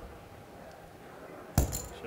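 Clay poker chips clacking together once, sharply, about one and a half seconds in, as chips go into the pot to call a bet. A low, steady room background lies under it.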